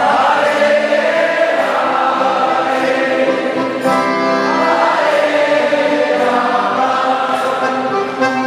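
A group of voices singing a devotional chant together in long held notes.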